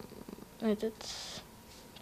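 A boy's hesitant speech: one short, quiet spoken syllable a little over half a second in, then a brief soft hiss, with quiet room tone around them.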